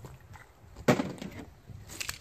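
A Polymer80 pistol being handled: one sharp clack about a second in, and a fainter click near the end.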